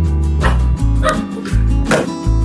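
A small dog yipping three or four times in short, high calls, over background guitar music.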